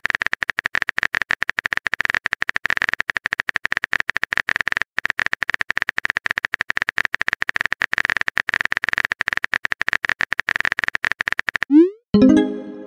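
Rapid, continuous clicking of a phone-keyboard typing sound effect, with one brief pause about five seconds in. It stops just before the end, followed by a short rising swoosh of a message being sent.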